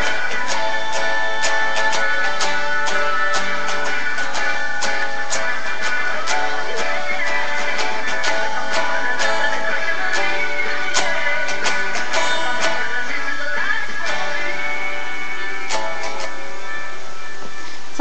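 Guitar strumming chords in a steady rhythm, about two to three strokes a second, played by a beginner who has been learning for three months.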